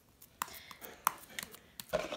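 A few light clicks and taps, about half a dozen spread over two seconds, as small plastic toys and a metal spoon knock against a glass bowl of slime.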